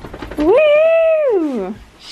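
Golden retriever giving one long whining howl that rises, holds, then slides down in pitch: an excited greeting.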